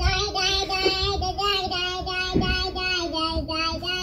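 A child singing a tune in long held notes, stepping from note to note and dipping slightly in pitch near the end.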